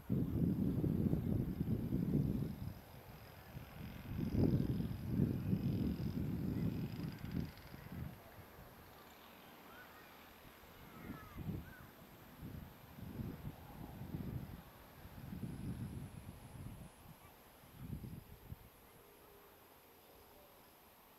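Wind buffeting the camera microphone in gusts, a low rumble that is strongest over the first seven seconds or so, then comes back in shorter, weaker puffs.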